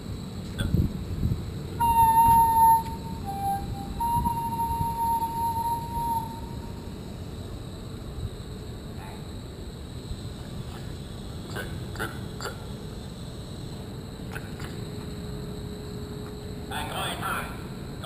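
Whistle-like tones: a steady high note held for about a second, a short lower note, then a longer note of about two seconds, over low wind rumble on the microphone.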